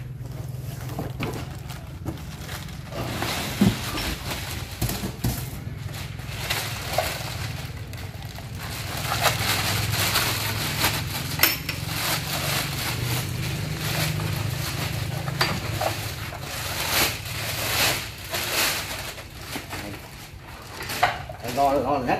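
A clear plastic bag crinkling and rustling as it is pulled off a loudspeaker cabinet, with irregular crackles and small clicks from the handling. A steady low hum runs underneath.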